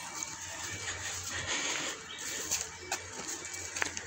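Footsteps brushing and crunching through dry grass and brush on a hillside trail, a steady rustle with a couple of sharp snaps near the end.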